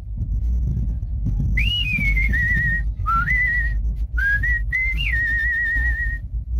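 A man whistling a tune through pursed lips: a clear, high whistled line in short phrases with swooping slides up and down, starting about a second and a half in. It ends in a quick warbling trill on one held note.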